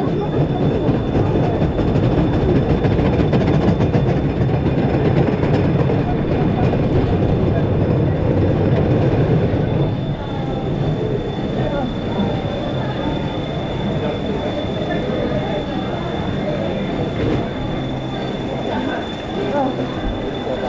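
Wooden roller coaster train rolling slowly through the brake section into the station: a steady rumble and clatter of wheels on track, easing off a little about halfway through as the train slows.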